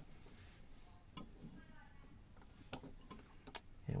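A few light metallic clicks and a short faint scrape as a small tool works the top off a brass mortise lock cylinder, with most of the clicks near the end.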